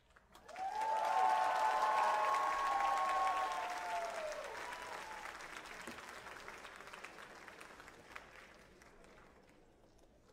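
Audience applauding with whoops and cheers. It breaks out about half a second in, is loudest for the first few seconds, and then gradually dies away.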